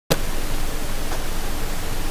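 Steady, even hiss of recording noise, cutting in abruptly at the very start and holding level throughout.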